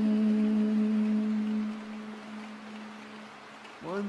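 A male reciter's chanting voice holding one long, steady note at the close of a Qur'an verse, fading away about two seconds in. After a short pause with only a faint hiss, the voice comes back with a rising note right at the end.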